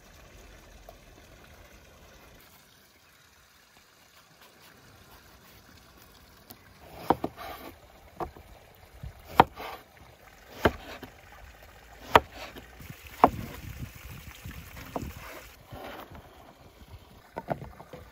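Knife slicing eggplant into rounds on a wooden cutting board. There is a crisp chop against the board about once every second or so, starting several seconds in, then a few lighter knocks near the end as the slices go into a wooden bowl.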